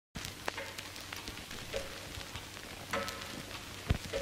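Sparse crackles and clicks with a few brief, faint tones over a low hum, the quiet opening of a slowed-and-reverbed pop track before its music comes in. A sharper click comes just before the end.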